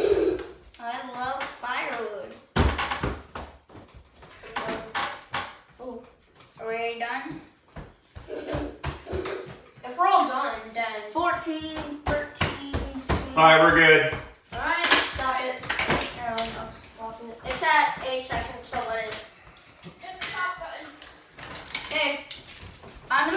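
Children's voices talking and chattering, with one sharp thump about two and a half seconds in.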